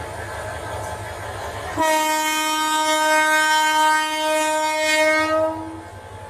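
Diesel locomotive horn sounding one long, steady blast of about four seconds, starting about two seconds in. A low rumble from the train comes before it.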